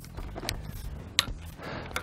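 Vanguard Veo 204AB tripod leg being extended by hand: two sharp clicks, under a second apart, with light handling noise as the leg clasps are undone and the sections pulled out.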